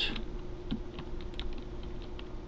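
Computer keyboard keys being typed, a few scattered keystroke clicks as code is entered.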